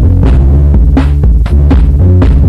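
Drum-machine track played on a Roland Boss DR-5 Dr. Rhythm Section: a heavy, repeating bass line under a steady electronic beat, with percussion hits about four times a second.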